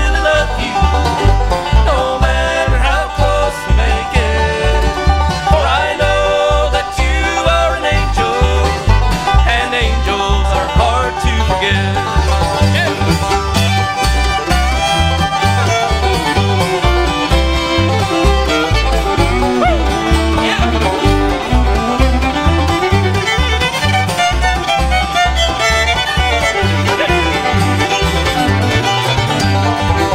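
Bluegrass band playing an instrumental break between verses: fast banjo and fiddle with guitar over a steady bass beat, the melody sliding up and down through the middle.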